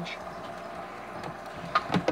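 Steady low background hum of room noise, with a faint short click near the end.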